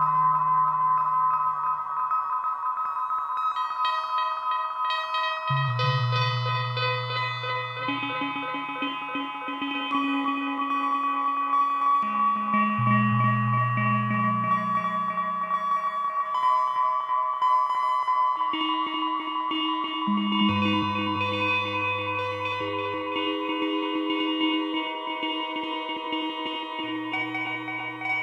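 Generative ambient music from a two-voice Eurorack modular synth with heavy delay: a low bass voice steps to a new held note every few seconds, while a higher voice plays plucked tones whose delay echoes pile up into a shimmering bed.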